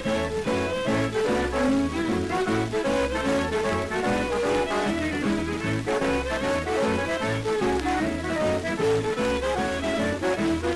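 Instrumental break of a mid-1940s boogie-woogie western swing band recording, played from an old 78 rpm record, with a lively melody over a steady, pulsing bass rhythm.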